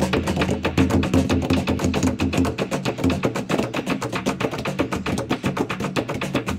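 Ensemble of traditional Zambian wooden drums with skin heads dabbed with tuning wax, several played by hand and one laid on its side and beaten with two wooden sticks, playing a fast, dense interlocking rhythm.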